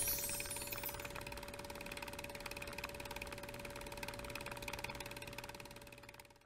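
Tail of a logo-sting sound effect: a sustained ringing tone over fast, faint mechanical ticking, slowly fading out at the end.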